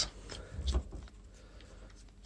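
Faint handling sounds of a small aluminium flashlight being unscrewed by hand: a few light clicks and scrapes in the first second.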